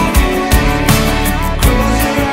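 Loud, full-band song mix: a strummed acoustic guitar over bass and a steady drum beat, with a sung lead vocal line.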